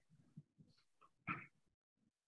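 Near silence with faint room tone, broken by one brief faint sound a little over a second in.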